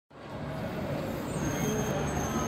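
Seattle Center Monorail's ALWEG train, running on rubber tyres along its concrete beam, rumbling as it approaches the station and growing louder, with a faint high whine coming in about halfway through.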